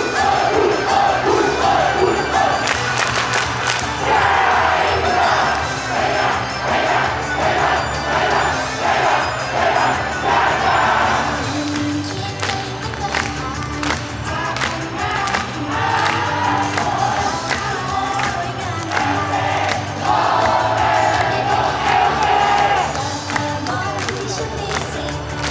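Upbeat idol-pop song played loud over a PA, with the girl group singing live into microphones and a crowd of fans shouting along in unison.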